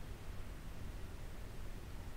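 Steady low hum with faint hiss: background room tone, with no distinct sound in it.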